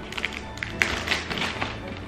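Background music with short crackles and taps from a gift-wrapped box being handled, its wrapping paper crinkling.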